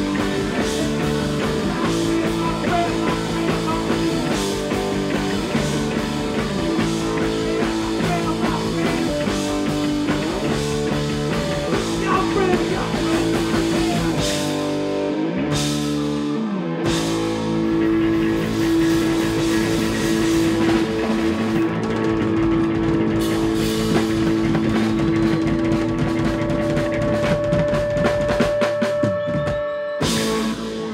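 Live rock band with electric guitars, bass and drum kit playing the closing section of a song. About halfway the low end drops out briefly; then the band holds long sustained chords under repeated cymbal crashes, building to the final chord near the end.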